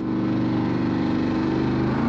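Engine of a Batmobile replica car running at a steady cruising speed: an even, unchanging drone.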